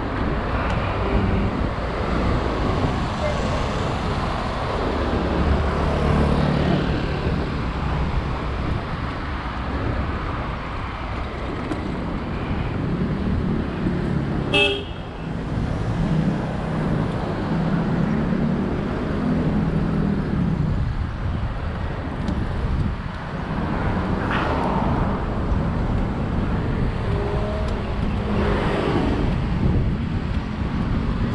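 City road traffic from a moving bicycle: a steady roar of cars and motorbikes passing close by, with a vehicle horn sounding, and a single sharp click about halfway through.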